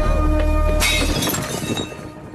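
Film score, then a glass fishbowl smashing suddenly about a second in, with bright ringing of glass that fades; the music drops away after the crash.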